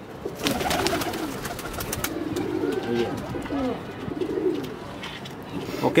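A loft full of domestic pigeons cooing, several low coos overlapping one after another. A brief clatter comes in the first second or so.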